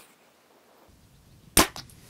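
APA Mamba 34 compound bow shot: a single sharp, loud crack of the string and limbs at release about one and a half seconds in, followed by a couple of faint ticks.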